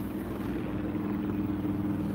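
A steady low mechanical hum, like a motor running at a constant speed, with no change in pitch.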